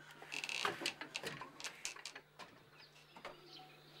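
Faint, scattered short bird chirps and clicks over a low steady hum.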